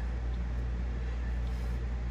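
A steady low hum with nothing else happening: no speech and no distinct clicks or knocks.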